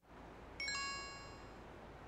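A single bright chime ding about half a second in, several high tones ringing out together for about a second over a low steady rumble.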